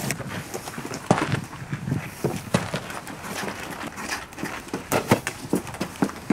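Shoes tapping and scuffing on a concrete path, with the hard knocks of a football being kicked about, in an irregular patter of short impacts, the loudest near the end.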